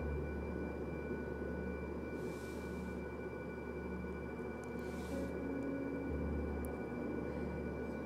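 Steady low electrical hum with faint high whining tones, and two short soft rustles of paper, about two and a half and five seconds in.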